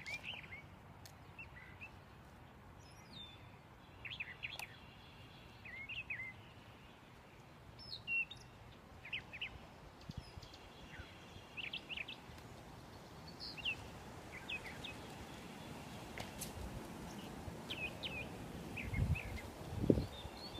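Small birds chirping and calling intermittently in short, high chirps, over a faint steady outdoor background. A louder low rumble comes in near the end.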